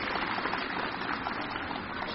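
Steady, even background noise with no voice: a hiss-like wash of ambience.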